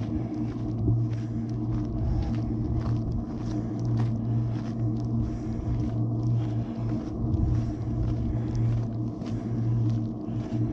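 Footsteps on a rocky gravel trail, roughly three steps every two seconds, over a steady low hum with a fixed pitch.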